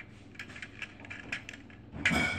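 Small plastic LEGO bricks clicking and clattering as they are handled among the pile on the floor: a string of light, irregular clicks.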